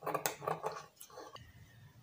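Scissors snipping through satin fabric, trimming off the excess seam allowance: a run of short snips that dies away about a second and a half in.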